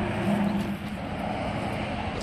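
Yamaha Venom snowmobile's 600cc three-cylinder engine idling steadily.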